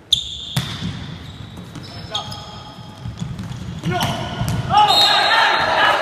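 Indoor volleyball rally: a brief high-pitched tone at the start, then the sharp smack of the serve about half a second in, followed by scattered hits and sneaker squeaks on the court. From about four seconds in, players shout and the crowd cheers loudly as the point ends.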